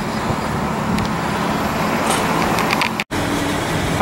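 Steady city street traffic noise, a low rumble of passing cars and trucks, broken by a brief dead gap about three seconds in.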